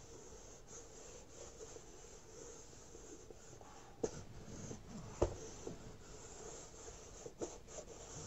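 Mini iron sliding and pressing over fabric on a cardboard egg carton, a faint scratchy rubbing, fusing the fabric on with heat-adhesive paper. Two light knocks come about four and five seconds in.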